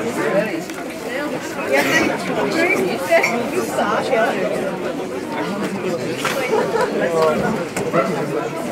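Overlapping chatter of many people talking at once in a crowded room, with no single voice standing out.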